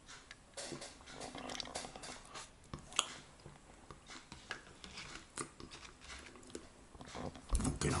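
A person chewing and swallowing a mouthful of soft chicken and sweetcorn pie close to the microphone, heard as a string of small wet mouth clicks. There is a sharper click about three seconds in and a low thump near the end.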